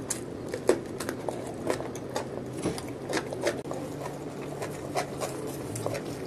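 Close-miked crunching and chewing of a bite of raw cucumber: a quick, irregular run of crisp crackles and wet clicks, the sharpest near the start.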